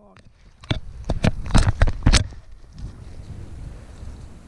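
A quick run of sharp clicks and knocks over about a second and a half, such as close handling noise, then a steady low rumble of wind on the microphone.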